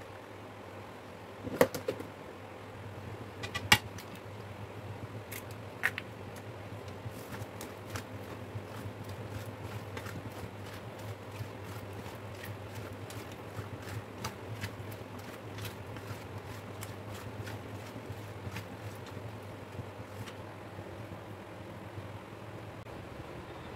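Raw potato wedges being tossed and mixed by hand in a stainless steel bowl: a few sharp knocks in the first six seconds, then many small scattered clicks of the wedges against the metal, over a steady low hum.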